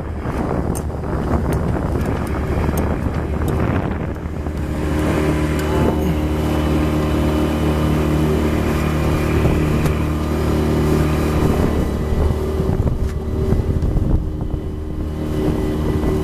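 A small motorboat's engine running steadily under way, a constant drone, with wind buffeting the microphone.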